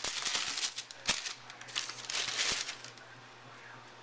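Shoebox tissue paper rustling and crinkling as a hand pushes it aside, with many sharp crackles; it dies down to a faint hush in the last second.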